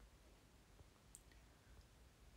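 Near silence: room tone with a low hum, broken by one faint, short, high click a little over a second in.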